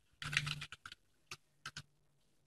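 Typing on a computer keyboard: a quick run of keystrokes in the first second, then a few single key presses.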